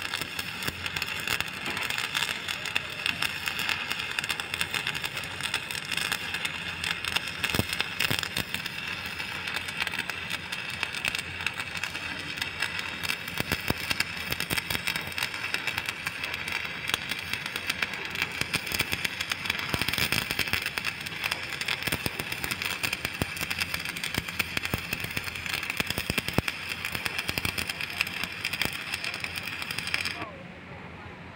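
Stick (shielded metal arc) welding on steel: the electrode's arc crackles and sizzles steadily, with scattered sharper pops, and cuts off at the very end as the arc is broken.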